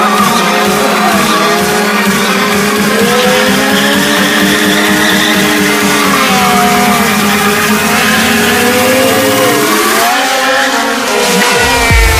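Motorcycle rear tyre squealing in smoky burnouts, the squeal wavering up and down in pitch over the engine held at high revs. Dance music plays underneath and comes up with heavy bass near the end.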